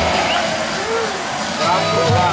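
Steady rush of falling water spray and splashing over a crowd of bathers, with people's voices and a brief call about a second in.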